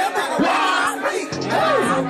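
Live rap performance: a rapper and crowd shouting the lyrics over a hip-hop backing beat with low bass notes.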